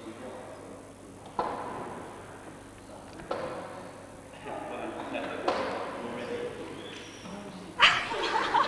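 Low, muffled voices in a hall, broken by a few sharp knocks that ring on briefly. Near the end comes a loud bump as the camcorder is handled and swung.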